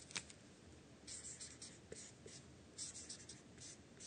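Marker pen writing on paper: short, faint scratching strokes in clusters, about a second in, around two seconds and again about three seconds in.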